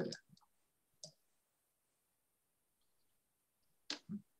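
Near silence broken by two brief clicks, a faint one about a second in and a sharper one just before the end.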